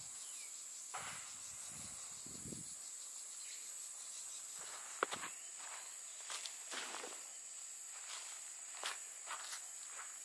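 A steady, high-pitched insect drone, with scattered footsteps and rustles on grass and a few sharp clicks. The loudest is a click about five seconds in.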